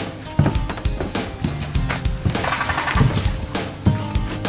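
Music with a steady drum beat.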